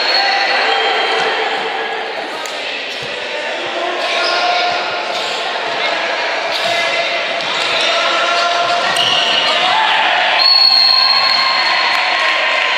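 Indoor futsal game in an echoing sports hall: the ball knocking on the court and players' and spectators' voices calling out, with a held high tone starting about ten seconds in.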